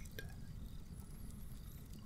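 Quiet pause: a faint, steady low hum with one soft click just after the start.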